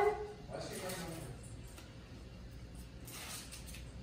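A panty liner's paper backing being peeled off its adhesive strip, a brief rustling rip about three seconds in. It follows a faint, short falling whine near the start.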